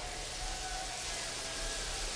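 Steady low background ambience with a faint held tone that fades out near the end.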